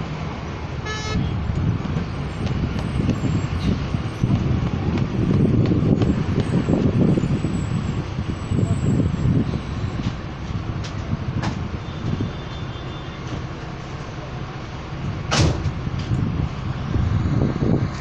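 Bus engine and road rumble heard from inside a slowly moving bus, rising and falling. A short high toot comes about a second in, and a sharp knock about fifteen seconds in.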